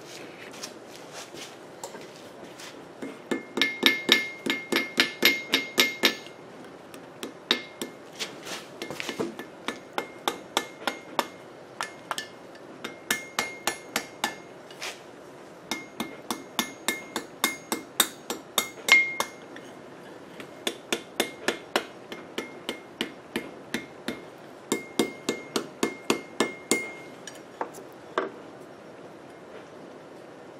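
Hand hammer striking red-hot steel on an anvil, forging the bar in runs of quick blows, about four a second, with short pauses between. Several runs carry a high ringing from the anvil.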